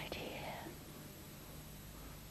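A woman whispering briefly near the start, then a faint, steady low hum.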